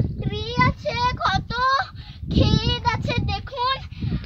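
A young child singing in a high voice, in short held phrases with a brief pause about two seconds in, over a low rumble of wind on the microphone.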